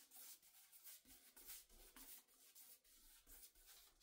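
Faint, repeated strokes of a paintbrush spreading wet black paint across a wooden tabletop.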